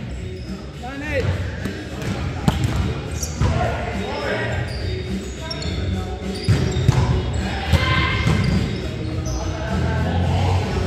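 Indoor volleyball rally in an echoing gym: several sharp hits of hands on the ball, with players calling out between them.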